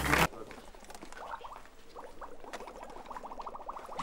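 Mouse squeaking: a series of short, high chirps that come faster in a rapid run near the end. Music cuts off just after the start.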